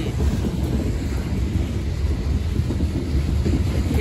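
Loaded coal train cars rolling past: a steady low rumble of steel wheels on rail, with wind on the microphone.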